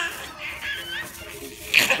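Baby giggling in short, high-pitched squeaks, with a brief noisy burst near the end.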